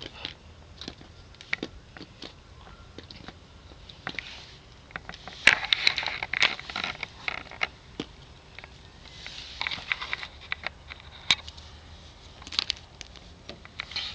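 Close-up handling noise of plastic toy horse figures and wooden play pieces: scattered clicks and taps, with longer rustling scrapes about five seconds in and again near ten seconds.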